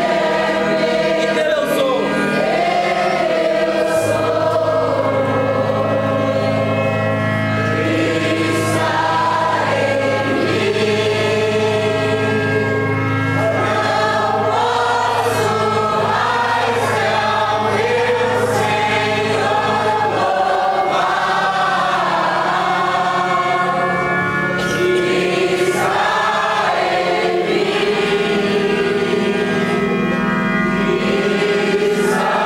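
A congregation singing together in worship, many voices at once, with a steady low note held under the voices from about 4 s in until about 20 s.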